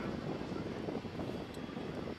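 Lockheed Martin F-117 Nighthawk's twin General Electric F404 turbofans running at low taxi power: a steady, even jet noise.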